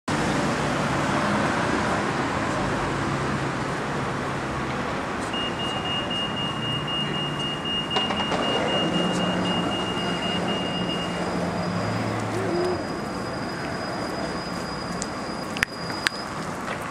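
Town-centre road traffic: cars driving past and idling, a steady rumble of engines and tyres. A thin steady high tone sounds through the middle, joined later by a higher one, and a sharp click comes near the end.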